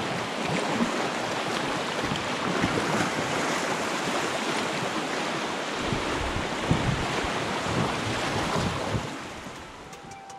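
Whitewater rapids rushing steadily around a small boat, with gusts of wind buffeting the microphone. The rush eases slightly near the end.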